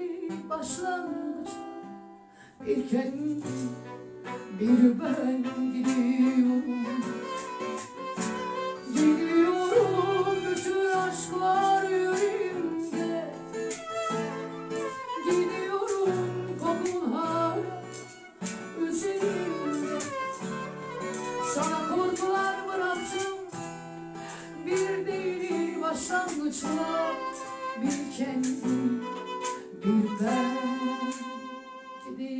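Live acoustic performance of a Turkish song: a woman singing over strummed acoustic guitar and violin, with a brief lull about two seconds in.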